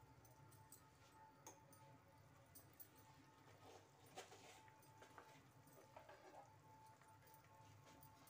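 Near silence: faint room tone with a few scattered soft ticks.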